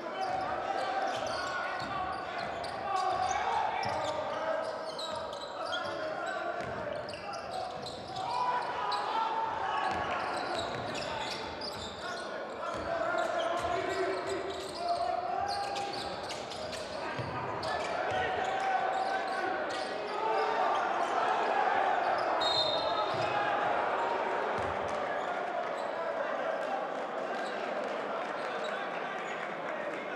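Basketball arena during live play: a crowd chanting together, with a basketball bouncing on the hardwood court. A brief high referee's whistle sounds about two-thirds of the way in.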